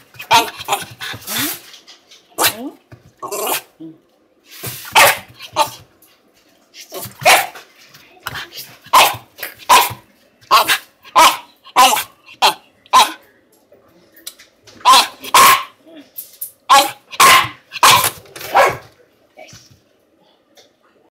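A Shiba Inu barks over and over in short, sharp barks, about one or two a second, in runs with brief pauses.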